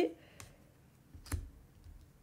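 A few light clicks of tarot cards being handled on a glass tabletop, the clearest about a second and a half in, with fainter ones before and after.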